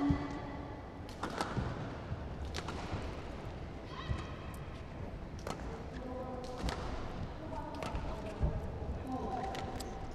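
Badminton rally: sharp racket strikes on the shuttlecock every second or so, with brief high squeaks of players' shoes on the court mat between the shots.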